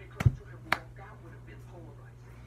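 Two sharp hand claps about half a second apart, the first the louder.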